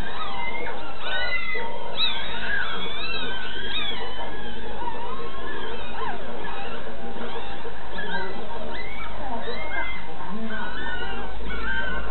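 A litter of newborn puppies squeaking and whimpering while nursing: many short, high calls that slide up and down and overlap, loudest from about one to four seconds in.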